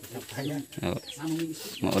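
People talking in the background, then a voice and a laugh near the end.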